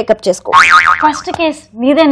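Women talking, with a short wobbling comic 'boing' sound effect about half a second in that lasts about half a second.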